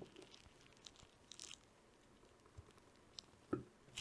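Near silence with a few faint clicks and a brief rustle: jumper-wire connectors being pushed into the holes of a solderless breadboard.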